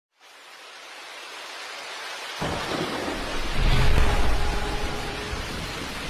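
Thunderstorm: rain hiss fading in, then deep rolls of thunder about two and a half seconds in and again, louder, around four seconds.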